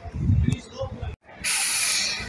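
A loud, steady burst of compressed air hissing from a coach's air system, venting. It starts about one and a half seconds in, after a brief dropout, with low rumbling before it.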